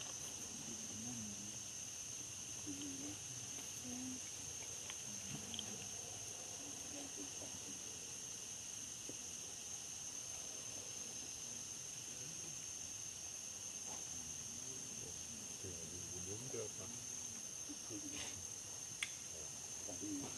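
Insects buzzing in one steady, unbroken high-pitched tone, with faint voices underneath.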